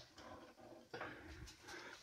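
Near silence: quiet room tone, with a faint sound about halfway through.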